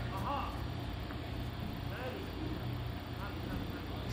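Faint, brief fragments of a voice over a steady low background hum, with no loud event.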